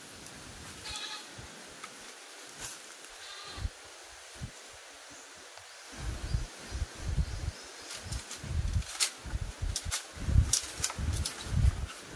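A goat bleats twice, about a second in and about three and a half seconds in. From about halfway, irregular low thumps and sharp knocks of bamboo follow as a man moves about in a bamboo goat shed.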